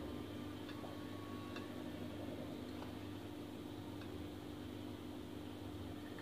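A steady low hum, with a few faint light clicks of a spoon and small glass bowls being handled as chopped fruit is added to a bowl of custard.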